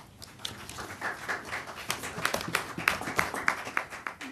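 Scattered hand clapping from a small audience, starting about a second in as irregular, sharp claps several a second.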